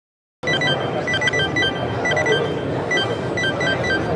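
Handheld laser barcode scanner beeping rapidly and irregularly, several short beeps a second, each beep a successful read of a barcode on a spinning disc. Crowd hubbub of a busy exhibition hall underneath.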